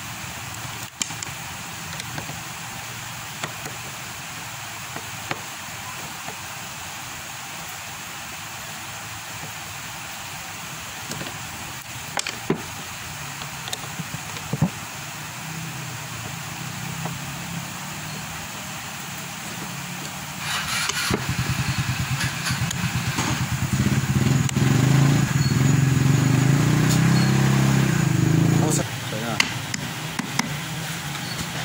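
Small scattered clicks of a screwdriver working the screws of an electric planer's cover, over steady background noise. About twenty seconds in, a nearby motor vehicle engine runs loud and low with a rapid pulse for about eight seconds, then drops away sharply near the end.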